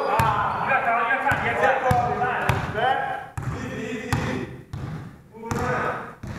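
Players shouting to each other over a basketball bouncing on a hardwood gym floor, with a few sharp bounces in the first three seconds. The shouting is loudest in the first three seconds, then comes again briefly near the end.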